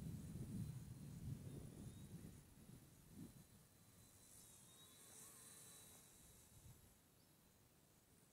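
Near silence: faint outdoor ambience with a faint, steady high-pitched tone, and a low rumble that fades away over the first few seconds.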